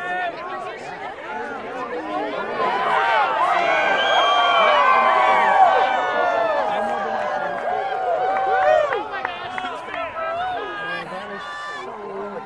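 A crowd of eclipse watchers cheering and shouting together as totality ends and the sun reappears, swelling to a peak near the middle and easing off toward the end.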